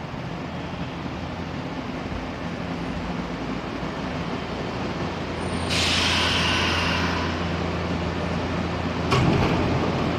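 Nankai electric commuter train running slowly into the platform and stopping. About six seconds in, a sudden hiss of air from the brakes lasts about a second, and about nine seconds in a sharp clunk comes as the doors slide open.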